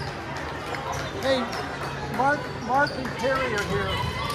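Several short shouted calls from players' voices, about half a second apart, over a ball bouncing on the hardwood gym floor, echoing in the gym.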